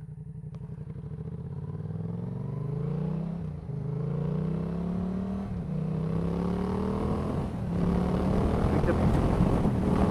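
2015 Yamaha MT-07's parallel-twin engine, through a Leo Vince aftermarket exhaust, accelerating hard: the note climbs and drops back three times, about two seconds apart, as it shifts up through the gears. Wind noise builds over it near the end as the speed climbs.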